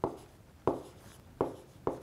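Stylus writing by hand on a tablet screen: four sharp taps of the pen tip as the strokes of a word go down.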